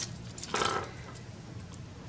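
One brief soft rustle about half a second in as plastic cutlery, a white knife and a black serrated knife, is picked up and handled.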